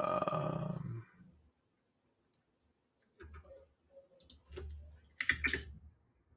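A man's drawn-out hesitant "uh" trailing off about a second in, then scattered keyboard clicks and light desk knocks, with a cluster of them near the end.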